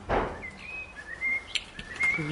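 A short rush of noise at the very start, then a bird's thin whistled notes in the background: a few held tones at nearly the same high pitch, some stepping slightly up or down.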